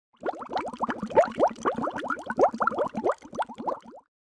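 Bubbling-water sound effect: a quick, irregular run of rising bloops, several a second, that stops abruptly near the end.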